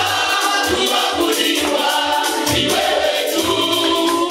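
A group of voices singing a gospel worship song together over music with a steady beat.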